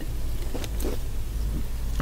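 Steady low hum with a few faint, short clicks.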